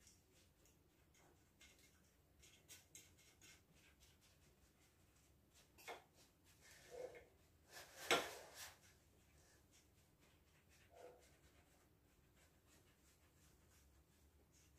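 Faint scraping and tapping of a silicone spatula pressing crushed biscuit crumbs into a metal baking tin, with one sharper knock about eight seconds in.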